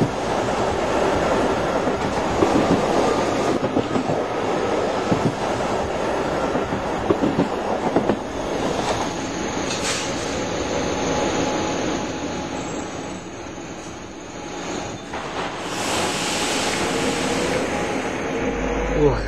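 Milan Metro Line 2 train running along the track, heard from on board, with a rising whine near the end.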